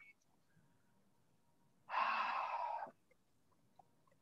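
One audible breath, about a second long, roughly halfway through; the rest is near silence.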